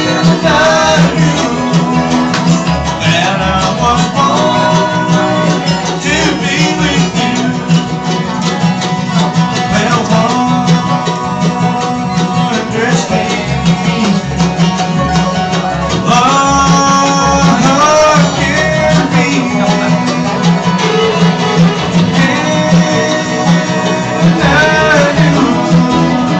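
Live bluegrass string band playing a song at full volume, with acoustic guitars, banjo, mandolin, fiddle and upright bass together.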